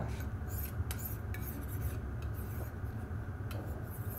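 Steel knife edge stroked across a DMT Extra Fine diamond plate, a soft scraping rub, while the edge is deburred at a slightly higher angle.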